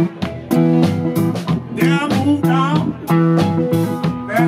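Live blues band playing: strummed acoustic guitar over upright bass and a drum kit, with a steady beat.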